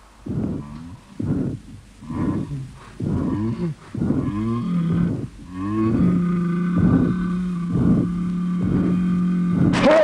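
A man's voice groaning in short moans about once a second, their pitch bending upward, then a long held low groan with further pulses over it.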